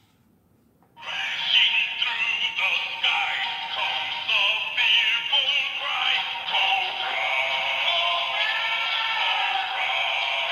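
Electronic G.I. Joe Cobra-emblem toy playing a song with a singing voice through its built-in speaker, switching on about a second in.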